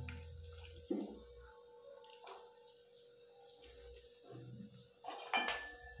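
Faint, scattered drips and light clinks at an aluminium cooking pot of soup as lemon juice is added, with a few short low rumbles between them.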